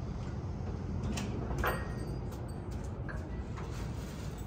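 Dover Impulse hydraulic elevator arriving at the landing: a steady low hum with a few sharp clicks from the car and door equipment just before the doors open.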